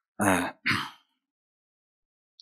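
A man clearing his throat into a microphone, two short bursts in quick succession within the first second.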